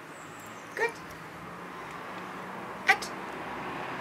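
A small papillon dog giving two short yips, about a second in and again near three seconds.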